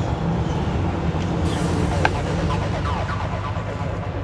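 Inside a moving bus: the engine and road noise make a steady low rumble, with a short click about two seconds in.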